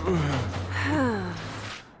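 A cartoon character's voice sighing wearily: two falling-pitch sighs, the second longer, over a steady low hum.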